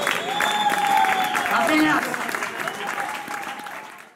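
Audience applauding and cheering after a live band's song, with shouted whoops over the clapping, fading out near the end.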